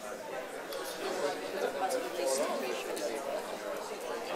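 Audience members talking among themselves in small groups, many voices overlapping into a steady murmur of chatter.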